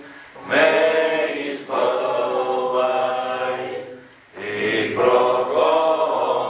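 A congregation singing a song together in sustained sung phrases, with short breaths between phrases just after the start and about four seconds in.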